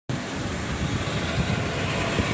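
Steady rushing wind and road noise of a moving car, heard from inside the car.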